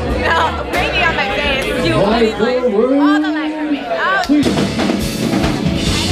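Voices talking over loud club background music. About four seconds in, this cuts to a live rock band playing loud, with drum kit.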